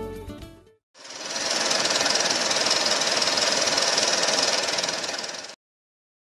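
Strummed guitar music fades out, and after a brief silence a steady, fine-grained rattling hiss swells in. It holds, then cuts off suddenly near the end; it is a sound effect for a production-company ident.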